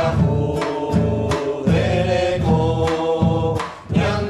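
A small mixed group of singers performing a church hymn, accompanied by acoustic guitar and regular drum strokes, with a short break between phrases near the end.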